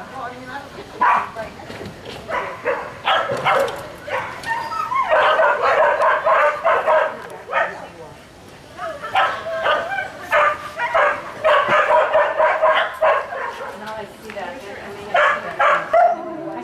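A border collie barking repeatedly as it runs an agility course: single barks at first, then long runs of rapid barking about five seconds in and again from about nine seconds.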